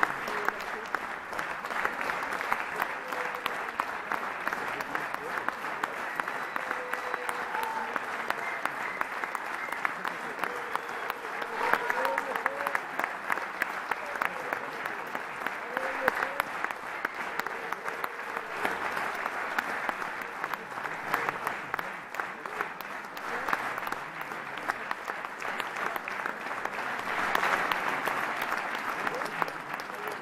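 Theatre audience applauding continuously, with voices calling out over the clapping. The applause swells near the end.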